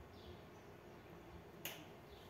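Near silence with one short, sharp click about one and a half seconds in.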